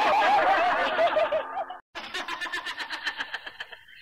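Vintage Khmer pop record: a voice wavering up and down in pitch in a laugh-like way trails off. After a brief break, a new passage starts with fast, even pulsing of about seven or eight beats a second.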